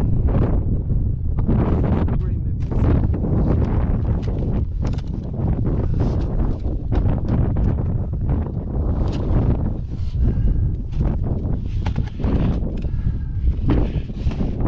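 Wind buffeting the camera's microphone with a continuous low rumble, broken by many scattered short knocks and rustles.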